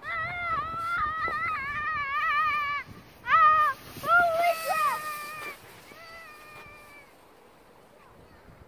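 A child's high-pitched squeals and wordless yells while sledding downhill. First comes one long wavering squeal, then a few shorter, louder shrieks, growing fainter toward the end.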